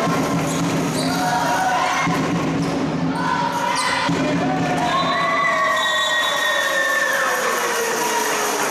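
Basketball bouncing on a hardwood gym floor during live play, with voices and crowd noise from the hall.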